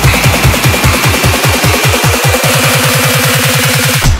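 Electronic bass music build-up: a roll of low kick drums, each dropping in pitch, speeds up into a rapid stutter under a held high synth tone. It cuts into the next section right at the end.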